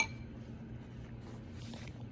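A metal spoon clinks once against a ceramic bowl, a short ringing tap, then soft chewing and faint scraping of a spoon in canned pasta, over a steady low hum.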